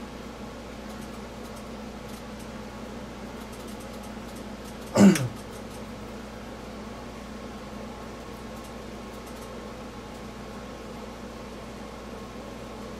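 Steady mechanical hum, like a room fan or ventilation, with a few faint ticks. About five seconds in, one brief, loud sound glides down in pitch.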